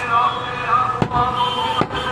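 Butcher's large knife chopping goat meat on a wooden chopping block: three sharp chops, one near the start, one about a second in and one near the end.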